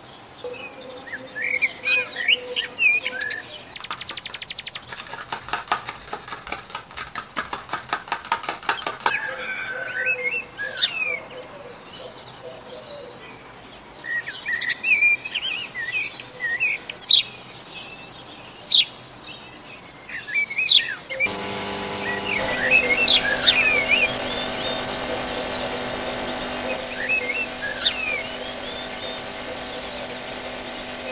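Small birds chirping and calling in short, repeated phrases, with a fast run of clicks for a few seconds early on. About two-thirds of the way in, a steady hum made of several tones starts abruptly under the birdsong.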